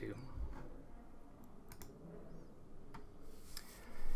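A handful of sharp, faint clicks, spread unevenly over quiet room tone.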